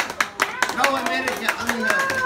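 A small group of people clapping their hands, in quick irregular claps, with voices talking and laughing over them.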